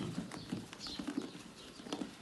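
Barki rams eating grain feed from a metal trough: irregular light knocks and crunching as their muzzles work through the feed.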